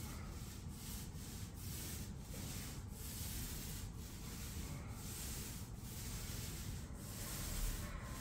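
A pole-mounted tool rubbing back and forth across a plaster ceiling, a steady rasping scrape broken by a short pause at each change of stroke, about once a second.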